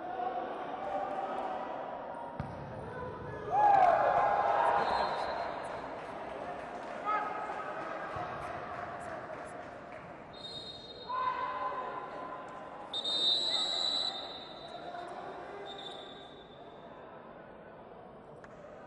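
A futsal ball being kicked and bouncing on the hard floor of an echoing indoor sports hall, amid shouting from players and spectators. The shouting is loudest about four seconds in, and high whistling sounds come twice later on.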